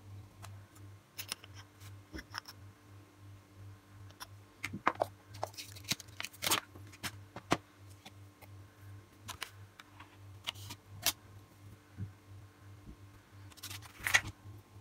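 Scattered small clicks, taps and brief rustles from handling nail-stamping tools: a nail polish bottle and brush and a metal stamping plate. A low steady hum runs underneath.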